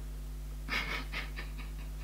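A woman's quiet, breathy laugh: a few short puffs of breath about a second in, fading away. A steady low hum runs underneath.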